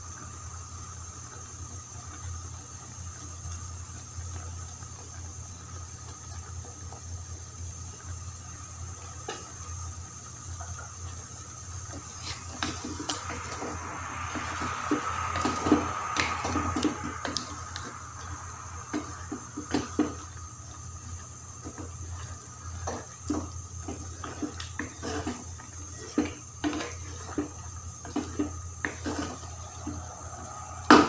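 Wooden spatula knocking and scraping against a nonstick wok as chicken pieces are stirred in bubbling liquid, with a run of clicks from about twelve seconds on. A steady low hum runs underneath.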